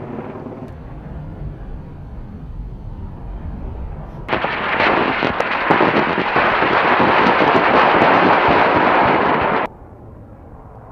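Low rolling rumble of weapon impacts dying away. About four seconds in, a sudden loud, steady rushing roar of a rocket motor in flight starts, and it cuts off abruptly near the end.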